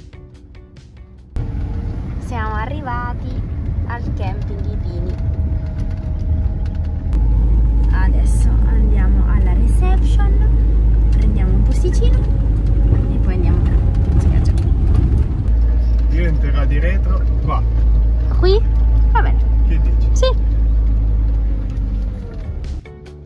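Inside the cab of a moving camper van: a steady deep rumble of engine and road noise. It comes in about a second in and gets heavier about seven seconds in.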